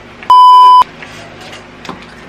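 A censor bleep: one loud, steady, high-pitched electronic beep lasting about half a second, starting about a third of a second in, with the room sound cut out beneath it. Faint taps of a brush in a plastic tub come before and after it.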